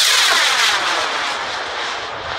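Model rocket motor burning as the rocket climbs away: a loud rushing hiss that slowly fades as it gains height.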